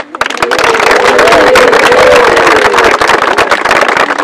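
Audience clapping and cheering, a dense patter of many hands with voices calling out over it. It breaks out suddenly and keeps going loudly.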